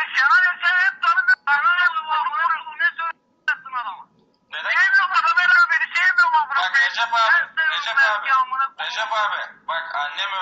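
High-pitched voices talking over a telephone line, thin and cut off below and above like call audio, with a couple of short pauses.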